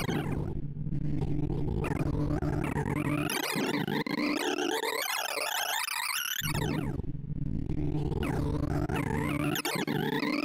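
Sonified sorting algorithm: a rapid stream of synthesized beeps whose pitch follows the values of the array elements being compared and swapped in a circle sort. The beeps run in repeated sweeping runs of rising and falling pitch over steady low tones, which drop out briefly twice.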